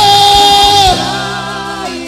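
Live gospel worship music: a male lead singer holds one long note over sustained band chords and a steady low drum beat. The voice stops about a second in, leaving the chords sounding.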